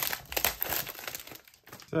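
Clear plastic shrink wrap crinkling and crackling as it is torn and pulled off a small box by hand, dense for about a second and a half, then dying away.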